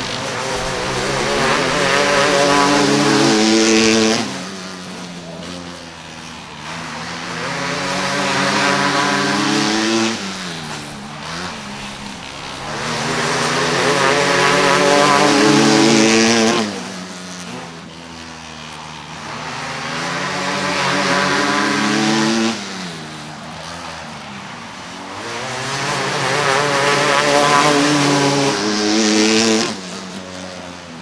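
Outlaw karts racing laps on a dirt oval. Their engines rise in pitch along each straight and cut back sharply into the turns, about every six seconds, five times over.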